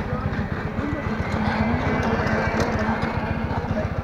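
Motorcycle engine running at low speed: a rapid, even low pulsing of its firing strokes, with road and air noise over it.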